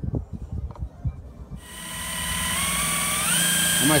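Cordless drill with a step drill bit starting up about a second and a half in and drilling into the van's sheet-metal body; its motor pitch rises in two steps as the trigger is squeezed harder.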